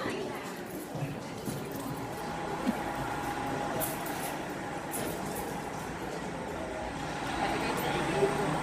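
Steady indoor background hum with faint voices of other people talking.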